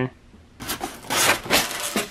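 Polystyrene foam lid rubbing and scraping against the foam shipping box as it is pried off, in a few irregular scrapes through the second half.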